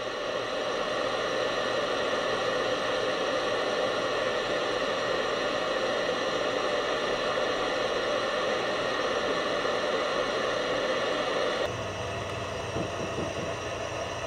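CPAP machine running: a steady hiss of blower and airflow through the mask hose. About twelve seconds in it gives way to a quieter hum, with a few soft knocks on a wooden door.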